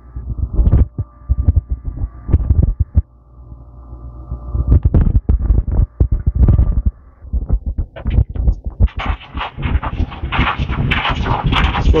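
Elevator car interior sounds: a steady multi-tone machine hum with heavy low thumps, the hum fading out about seven seconds in. A rattling clatter fills the last few seconds as the car doors open.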